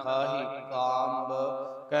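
A man's voice intoning in a chant, holding a nearly steady pitch for almost two seconds: sung recitation within a Sikh katha.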